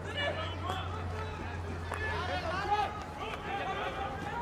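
Field hockey pitch sound under the broadcast: players' voices calling out across the field, with a faint click of stick on ball and a steady low hum.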